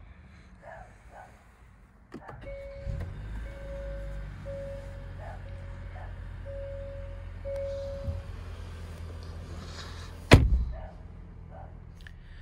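Hyundai Santa Fe's cabin warning chime sounding six times at one pitch, over a low steady hum. Near the end comes a single loud thunk of a car door shutting.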